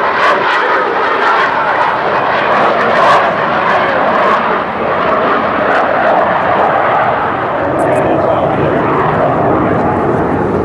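Lockheed F-117 Nighthawk stealth jet making a flyby, its two non-afterburning General Electric F404 turbofans giving a steady jet noise as it passes overhead.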